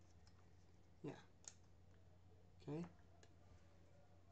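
A nearly quiet room with a low steady hum and a few faint, sharp single clicks at a computer, the clearest about a second and a half in.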